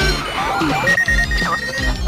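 Cartoon soundtrack music with a steady beat, with a single steady high beep tone held for about a second midway through.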